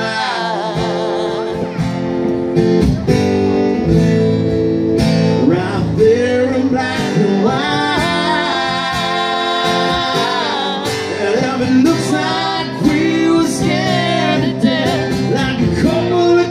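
A man singing a country ballad live, accompanied by his own strummed acoustic guitar through a PA.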